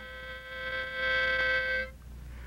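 A harmonica holding one steady chord, growing louder about a second in and stopping just before the end.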